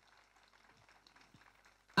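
Near silence: faint room tone in a pause between spoken phrases, with a woman's amplified voice starting again at the very end.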